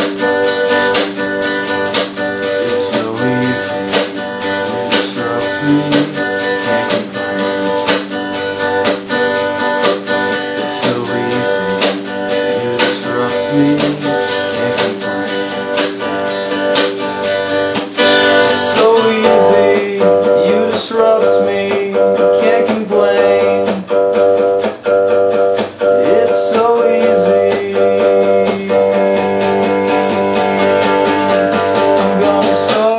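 Acoustic guitar strummed in a steady rhythm, getting louder a little past halfway through.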